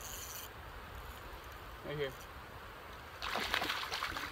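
River water running steadily, with a brief louder rush of noise near the end.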